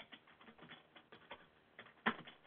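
Faint computer keyboard typing: a quick, irregular run of key clicks.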